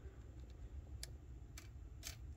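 Two faint clicks about half a second apart as fingers handle the plastic body mount on an RC car chassis, over a low steady hum.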